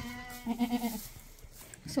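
A goat's low, wavering bleat that fades out about a second in.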